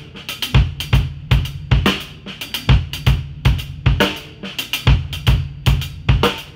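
Drum kit groove: fast double strokes (diddles) on the hi-hat over bass drum and snare hits, played as a steady, repeating loop.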